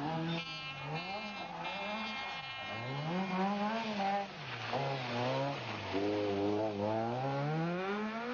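Opel Kadett rally car's engine running hard, its pitch repeatedly climbing and then dropping away.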